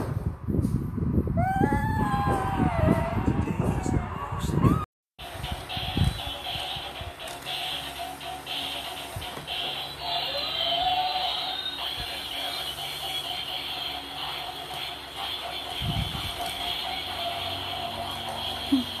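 A children's song playing through a tablet's small speaker, with gliding sung notes, cutting off about five seconds in. Then quieter music continues with a steady high tone.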